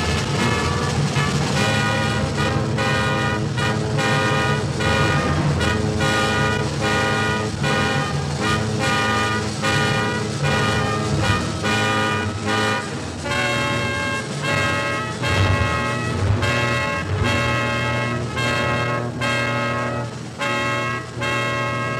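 Jazz big band in a live recording: the brass and saxophone section plays a series of held chords, one after another, over a low bass line.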